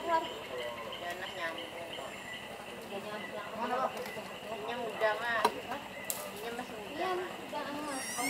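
Indistinct voices of people talking quietly, over a steady high-pitched hum in the background.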